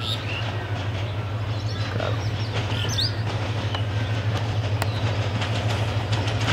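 Approaching diesel passenger train rumbling steadily as it nears, growing slowly louder, with a few bird chirps over it.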